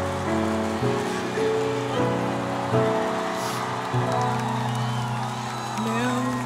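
Live music: sustained instrumental chords change about once a second over a steady hiss of stadium crowd noise, and a woman's singing voice comes in near the end.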